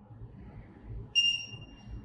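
A single high-pitched electronic beep from a handheld social-distancing alert device as it is switched on, starting about a second in and lasting just under a second.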